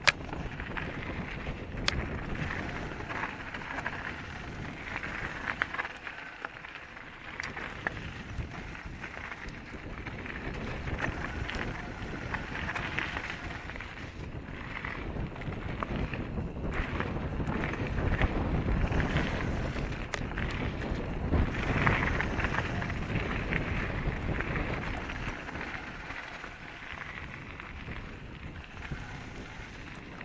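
Downhill mountain bike ridden fast over a dirt and gravel trail: continuous tyre rumble and wind on the microphone, with knocks and rattles from the bike over bumps. It gets louder for a few seconds past the middle.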